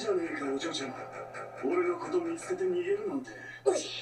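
Anime dialogue playing from the episode, a fairly high-pitched voice talking over background music.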